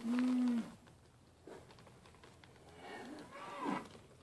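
Mini LaMancha goat bleating close by: one loud, short bleat right at the start, held level and dropping at the end, then a fainter bleat that rises and falls in pitch near the end.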